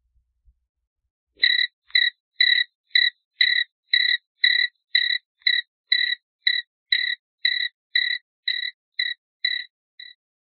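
Cricket chirping sound effect: short, evenly spaced chirps, about two a second, starting over a second in and running to near the end. It plays as the 'crickets' gag, standing for an audience that gives no response.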